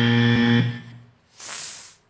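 Game-show wrong-answer buzzer: a loud, low, steady buzz that cuts off sharply under a second in, marking a strike for an answer not on the board. A short, quieter hiss follows near the end.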